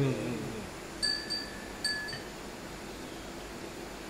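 Light tableware clinks: three clear ringing strikes at the same pitch, about a second in and just before the two-second mark, each dying away within half a second.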